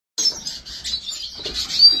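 Many cage birds chirping and twittering at once, a dense overlapping chatter of short high calls, with one louder whistle just before a voice comes in at the end.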